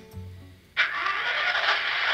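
Diesel engine sound from the sound decoder of a PIKO D.145 H0 model locomotive, played through its small built-in loudspeaker. It starts suddenly about a second in and then runs steadily, thin in the bass. Before it, a last trace of background music fades out.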